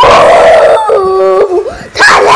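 A child's loud voice: a rough shout, then a held howling 'oooo' about a second in, a ghost imitation.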